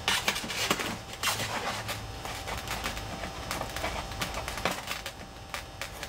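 Fingers pressing and rubbing strips of tape down onto a Depron foam tube, making irregular crackles and clicks of tape against foam.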